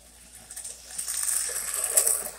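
O gauge toy train cars' metal wheels rolling and clattering over tubular three-rail track, growing louder about half a second in as the train nears and passes close by.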